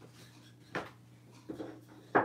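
A small wooden sign block is picked up from a stack and set down on a tabletop. A short knock comes about three quarters of a second in, and softer handling knocks follow near the end, over a steady low hum.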